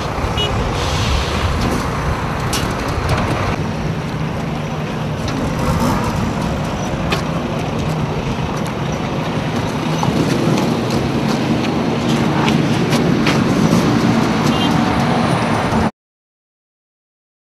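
Steady road-vehicle noise: engines running with a low hum and a haze of traffic sound, with a few scattered clicks, growing a little louder in the second half.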